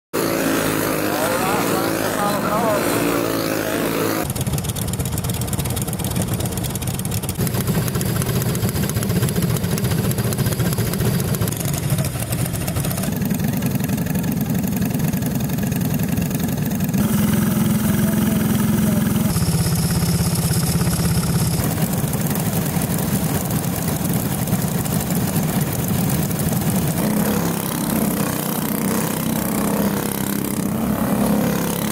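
Racing go-kart engines running, small single-cylinder motors with a steady low drone. The sound changes abruptly every few seconds from one take to the next.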